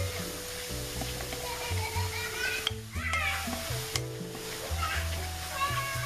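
Baking soda fizzing in sulfuric acid as a plastic spoon stirs and scrapes it around a glass bowl, the hiss of the neutralizing reaction. Background music with long held notes plays over it.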